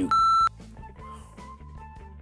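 A single electronic buzzer beep, one steady tone about half a second long, pressed to signal a guess, followed by quiet background music with light plucked notes.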